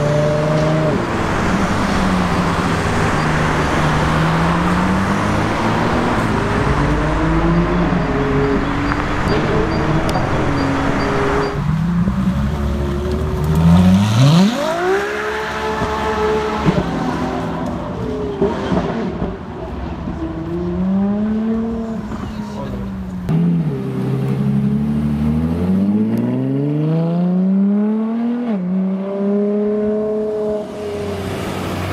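Ferrari LaFerrari's V12 with a valveless exhaust, revving and accelerating hard, its pitch climbing and falling again and again. A dense rush of noise runs under the engine for roughly the first eleven seconds. The steepest climb in pitch comes at about a third of the way in.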